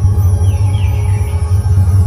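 Dhumal band music played loud: large barrel drums give a dense, heavy low beat, with a melody line above it. A short falling high tone sounds about half a second in.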